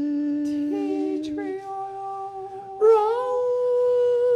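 Men's voices holding long sung notes in harmony, unaccompanied, stepping up to a higher held note about three seconds in.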